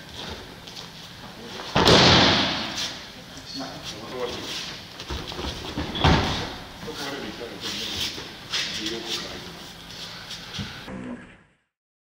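Judo throws landing on tatami mats: a heavy thud of a body slamming onto the mat with a breakfall slap about two seconds in, the loudest sound, followed by a second sharp landing about six seconds in. Lighter knocks and scuffs of bodies on the mat come in between, and the sound cuts off shortly before the end.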